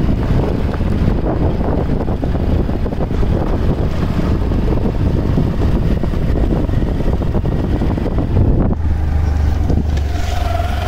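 Motor scooter riding over a rough dirt and gravel track, its engine and tyres running steadily under wind buffeting the microphone.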